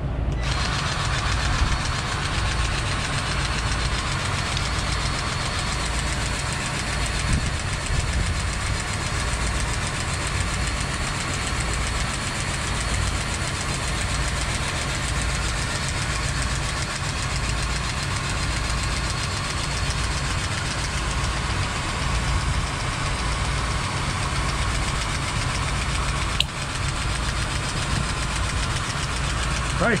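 Cordless grease gun running continuously as it pumps grease onto a truck's fifth-wheel plate: a steady motor whirr with a regular low pulsing from the pump strokes. There is a short click near the end.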